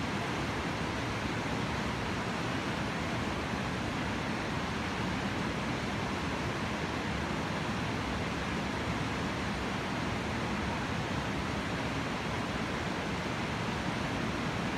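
Steady rushing of a whitewater river rapid, an even roar of water with no breaks.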